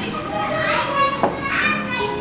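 Young children's voices calling and chattering as they play in a large hall, with a single sharp click a little over a second in.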